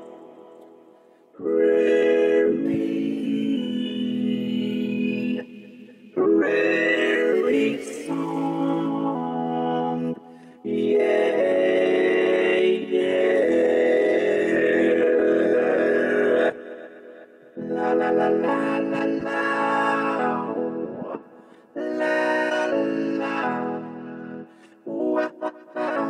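Vio vocoder-synth app on an iPad playing its Prairie Song preset: held, chord-like vocoded synth tones in phrases of a few seconds each, with short breaks between them and shorter phrases near the end.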